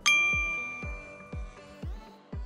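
A single bright bell-like ding at the start, ringing out and fading over about a second and a half, over background music with a steady low beat about twice a second.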